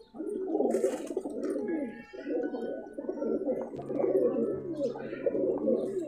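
Many domestic pigeons cooing at once, their low coos overlapping in a steady chorus.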